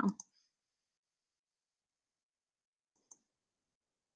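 A single faint computer mouse click about three seconds in, turning the page of an ebook on screen; otherwise silence.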